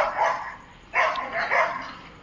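Dogs barking in two short bouts, one at the start and another about a second in.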